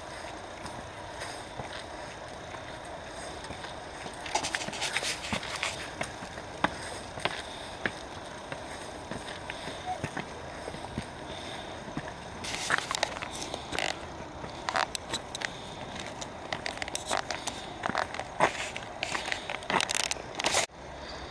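Footsteps climbing stone steps and then crunching on a sandy gravel path, coming in irregular clusters of scuffs and crunches, over a background of people talking.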